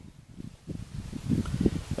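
Low, uneven rumbling noise on the microphone, swelling from about half a second in.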